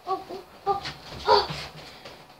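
A few short, high-pitched yelps, the loudest about a second and a half in.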